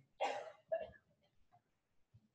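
A short throat clearing: two brief rough sounds in the first second, the first the louder.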